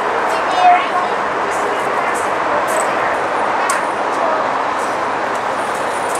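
Indistinct voices of small children and an adult in the background, over steady outdoor noise, with scattered light clicks.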